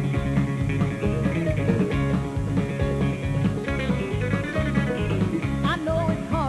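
Instrumental passage of a country song: guitars play over a steady drum and bass beat, with sliding notes in the lead line in the second half.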